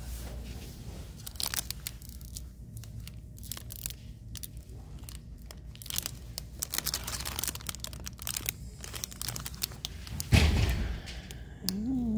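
Clear plastic packaging crinkling and crackling in the hand as a bagged rhinestone hair clip is handled, with a loud thump about ten seconds in.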